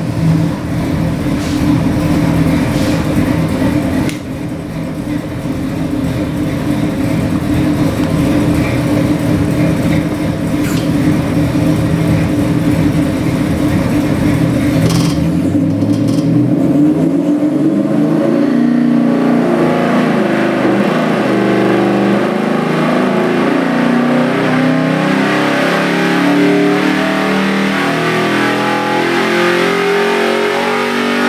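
Ford 347 stroker small-block V8 crate engine with a Holley carburetor running on an engine dyno. For about the first half it runs steadily at a low speed, around 1,500 rpm. From about halfway it is pulled through a dyno sweep under full load, its pitch rising steadily to about 5,400 rpm by the end.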